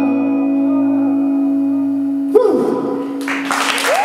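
A live band's final held chord on keyboard and electric guitar rings steadily, then ends with a sharp accent about two and a half seconds in. Audience applause and cheering swell up over the last second.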